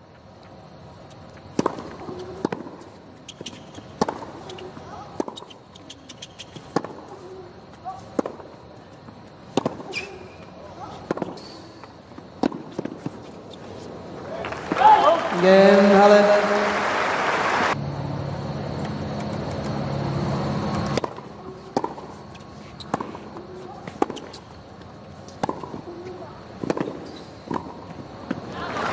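Tennis rallies: sharp racket-on-ball strikes about a second apart, with the ball bouncing on a hard court. About halfway through, the crowd breaks into a loud burst of cheering and applause with voices calling out. The strikes then resume.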